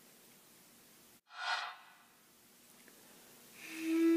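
A single breath about a second and a half in, then near the end a steady held note swells up and sustains.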